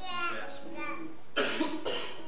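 A person coughing, two or three quick bursts about one and a half seconds in, after a brief high-pitched voice at the start.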